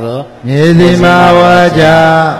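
A Buddhist monk's voice chanting Pali scripture in a drawn-out, level intonation, holding one long syllable from about half a second in and starting another near the end.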